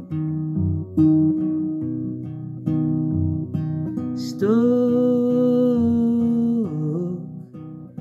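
Nylon-string classical guitar fingerpicked in a slow 3/4 waltz, with slides, a broken C chord implying a major seventh. About halfway through, a man's voice holds one long sung note over the picking.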